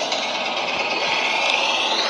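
Steady din of a large arena crowd, a dense, even hubbub with no single voice standing out.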